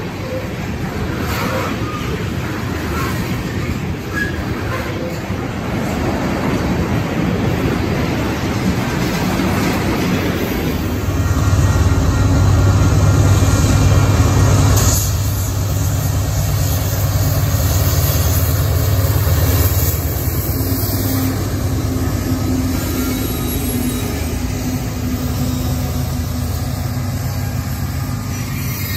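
Freight trains passing: steel wheels of rail cars rolling over the track with steady noise, then a louder, deep rumble of diesel locomotives, loudest a little before the middle, that eases off later.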